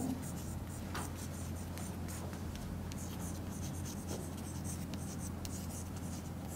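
Chalk scratching on a blackboard as words are written: a run of short, faint strokes over a steady low hum.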